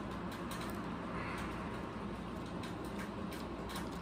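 Pages of a Bible being leafed through: soft, scattered rustles of thin paper over a steady low hiss and hum.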